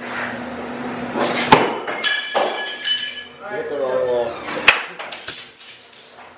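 Glass smashing twice, once about a second and a half in and again near the end, each crash followed by ringing and tinkling fragments. Voices are heard between the crashes.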